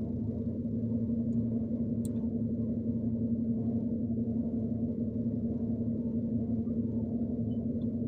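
Car engine idling, heard from inside the cabin as a steady low hum with a constant droning tone.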